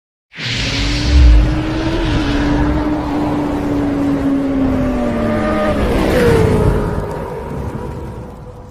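Sound-effect motorcycle engine for a logo intro. It opens with a whoosh and a low boom about a second in, then runs as a steady hum that slowly drops in pitch, glides down around six seconds and fades out.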